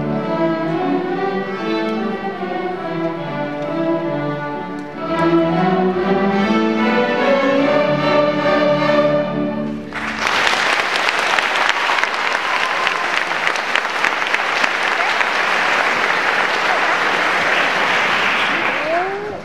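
Children's string orchestra of violins and cellos playing a piece to its end. The music stops about ten seconds in, and audience applause starts at once and carries on.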